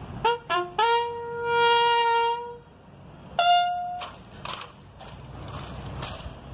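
Military bugle call of four notes: two short notes, a long held note, then after a short pause a single higher note.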